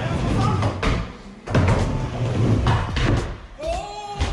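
Skateboard rolling on a plywood mini ramp: a steady low rumble of the wheels on the wood, broken by several sharp clacks of the board and trucks striking the ramp and coping.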